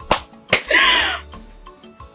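Two sharp smacks, such as hand claps, about 0.4 s apart, then a short vocal burst, over background music.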